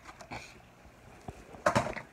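Brief rustling and handling noises as things are picked up and moved close to the microphone: a short rustle early on, then quiet room tone, then a louder, sharper rustle near the end.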